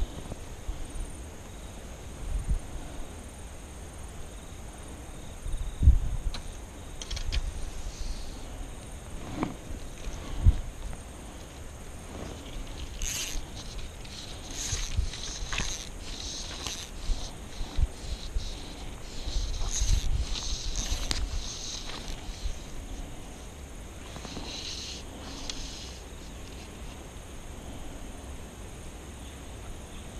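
Fly rod and reel being handled and cast: scattered knocks, and for several seconds in the middle a series of short, high rasping bursts as fly line is pulled off the reel and cast out.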